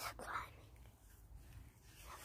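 A boy's hushed, whispered voice for the first half second, then near quiet with a faint low rumble.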